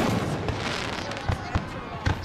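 Fireworks going off: a sharp burst at the start, then a scatter of smaller pops and crackles.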